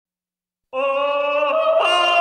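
A doo-wop vocal group comes in about three-quarters of a second in with a held, sustained harmony note, opening the song. The chord steps up in pitch near the end.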